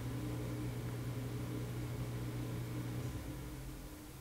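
Room tone with a steady low mechanical hum that fades away about three seconds in.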